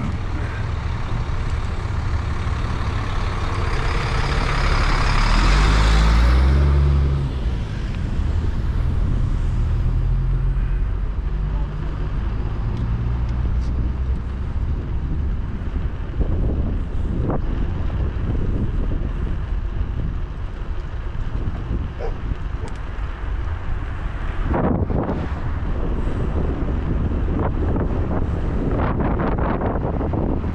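Street riding ambience: wind on the microphone and road traffic, with one vehicle passing loudly about four to seven seconds in before dropping away.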